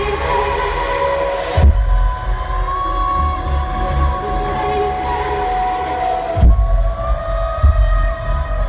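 Live pop music played loud through a stadium sound system, recorded from the floor on a phone: sustained synth and vocal tones over a pulsing bass, with two deep bass hits, about a second and a half in and again near the end. Crowd cheering sits beneath the music.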